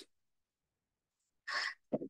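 A short vocal noise from a person near the end, after a second and a half of dead silence: a breathy puff, then a brief low voiced sound.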